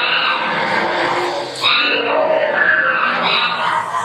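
Horror sound effects playing in a haunted-house attraction: loud, monster-like vocal cries and moans that bend in pitch, with a new cry starting near the middle and another near the end.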